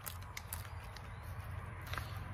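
Plastic spoon stirring beef ravioli inside an MRE pouch, with scattered faint clicks and crinkles of the pouch, over a low steady hum.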